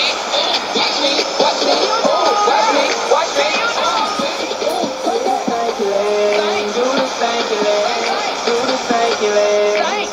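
A rap-pop song with a sung and chanted melody plays from a shortwave AM broadcast through a Sony world-band receiver's speaker. It sounds thin, with no bass and no top end.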